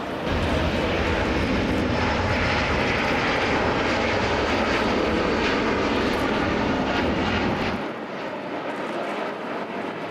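Cathay Pacific Airbus A350's Rolls-Royce Trent XWB jet engines at takeoff power: a loud, steady jet noise with a deep rumble beneath it. Near the end the deep rumble falls away and the sound grows thinner and quieter.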